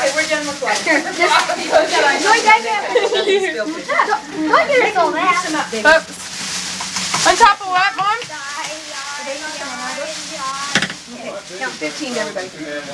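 Several people talking over one another, with bursts of hissing, rustling noise, the loudest about six to seven seconds in.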